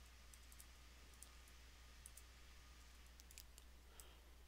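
Faint, irregular computer keyboard key clicks over a low steady hum, as a command line is edited.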